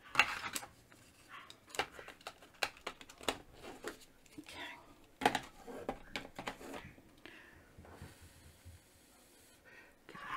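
Small sharp clicks and taps of a plastic ink pad case being handled, pressed shut and set down on a tabletop, several separate knocks spread over the first several seconds.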